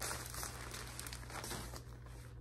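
Plastic packaging crinkling steadily as it is handled.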